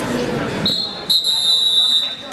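Wrestling referee's whistle signalling the fall: a short blast, then a longer, louder blast on one high, steady pitch, over crowd voices.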